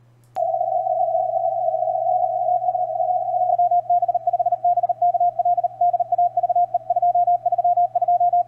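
Morse code (CW) signal received on a software-defined radio and heard as a single tone of about 700 Hz through the CW peak filter. After a click about a third of a second in, the tone is held steady for about three seconds. It then breaks into very fast keyed dots and dashes, ridiculously fast, over a faint low hum.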